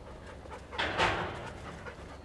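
A dog panting, with one louder breathy rush of about half a second near the middle.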